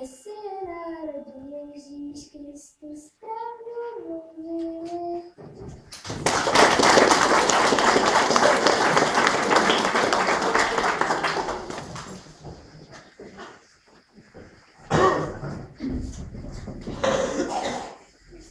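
A young girl singing a short solo line, then a room full of people applauding for about six seconds, dying away, with a couple of brief noises near the end.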